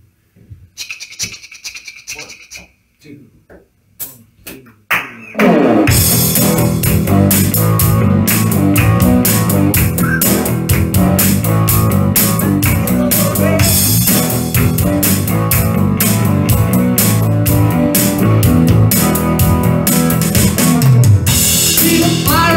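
A few soft taps and a short high shimmer. About five seconds in there is a rising sweep, and then a small rock band kicks in with drum kit, electric bass and acoustic guitar, playing a driving instrumental song intro.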